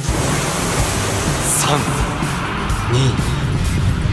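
Espresso machine steam wand blowing steam: a loud, steady hiss that starts abruptly, under background music.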